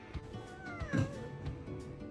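A house cat meows once about a second in, a short call that rises and then falls in pitch, over background music.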